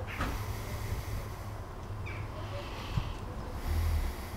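Outdoor background noise: a steady low rumble with a faint rushing hiss that swells twice, a brief high falling chirp at the very start and a single soft knock about three seconds in.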